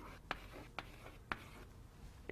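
Chalk writing on a blackboard, faint: a short scratch and then three sharp taps about half a second apart as the characters are written.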